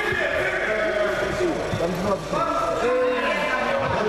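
Several men's voices shouting and calling out over one another from around a wrestling mat, some of the shouts drawn out.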